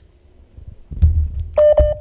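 Telephone line noise on a failing call-in connection: a low rumble about a second in, then a short steady electronic beep just before the end.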